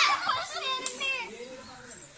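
A group of children shouting and chattering in high voices, loudest in the first second and then dying down.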